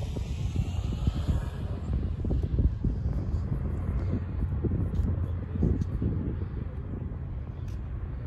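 Wind buffeting the microphone: a gusty low rumble that swells and dips unevenly.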